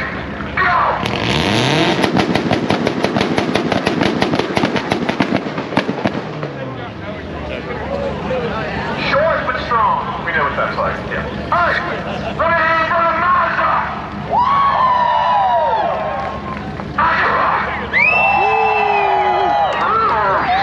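Drag-racing car engine revving hard with a rapid crackle of exhaust pops. It starts about a second in and fades after about five seconds, followed by crowd voices and shouts.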